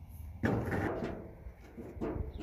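A sharp knock with a rattle about half a second in, then a few lighter clicks: hard objects being handled on a metal work table.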